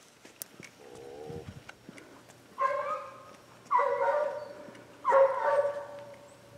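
A dog giving three loud, drawn-out barks about a second apart in the second half, after a fainter whine about a second in.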